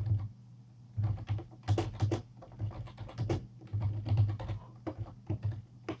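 Typing on a computer keyboard: quick, irregular key clicks, pausing for under a second shortly after the start, over a faint steady low hum.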